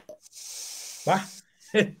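A person's drawn-out hiss through the teeth, under a second long, followed by one short spoken syllable.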